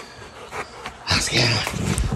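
A Rottweiler panting hard close up, loud rough breaths in quick succession starting about a second in.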